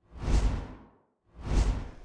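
Two whoosh transition sound effects, each swelling and fading over about half a second with a deep low rumble underneath, the first about a third of a second in and the second about a second and a half in.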